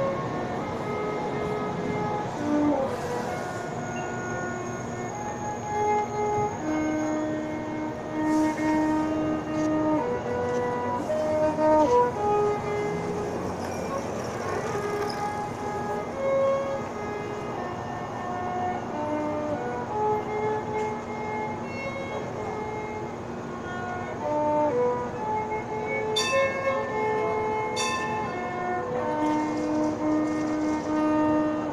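Violin playing a melody in long held notes, over a steady low tone.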